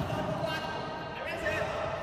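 Indistinct voices of players talking in a large indoor futsal hall, with one sharp knock at the very start, typical of a futsal ball hitting the hard floor.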